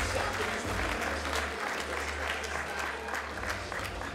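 Audience applauding with dense clapping that eases off slightly near the end.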